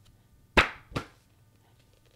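Two sharp slaps on a large softcover book as it is handled, under half a second apart, the first louder.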